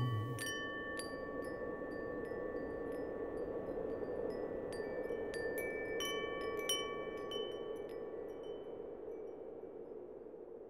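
Wind chimes ringing in scattered, irregular strikes that thin out and fade away over the last few seconds, over a faint steady wash of noise.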